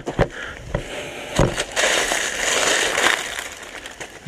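Dry fallen leaves crackling and rustling as a gloved hand pushes through the leaf litter: a few sharp crackles in the first second and a half, then about a second and a half of continuous rustling that fades out.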